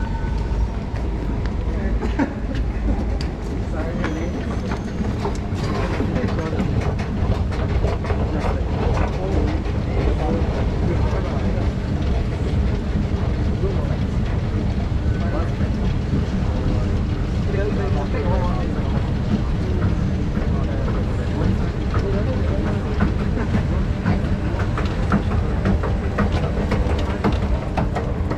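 Underground metro station ambience: a steady low rumble, with scattered footsteps and the chatter of passengers.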